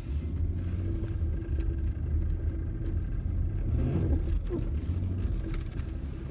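Pickup truck driving slowly across a field, heard from inside the cab: a steady low engine and road rumble.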